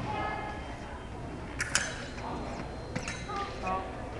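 Fencing foils striking together: a sharp metallic click with a brief ring about one and a half seconds in, and another about three seconds in, over background voices.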